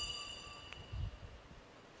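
A high, bell-like ringing tone with several pitches, fading, cut off with a click under a second in, followed by faint low rumbling.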